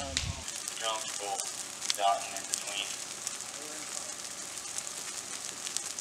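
Ground fire burning through dry leaf litter: a steady crackling hiss scattered with small sharp pops. Faint voices sound in the distance.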